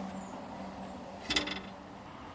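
A single brief clack about one and a half seconds in as the plastic center console is handled, over a faint steady hum.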